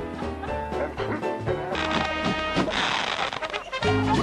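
Background music with several pitched instruments playing. A hiss-like noise runs under it for about two seconds in the middle, ending abruptly near the end.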